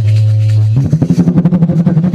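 Dholak drum played in a fast run of rapid strokes starting just under a second in, over a steady held note from the accompaniment, in an instrumental break between sung lines of a kirtan.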